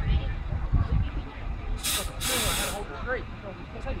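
Voices of people talking in the background, with wind rumbling on the microphone and two short bursts of hiss about two seconds in.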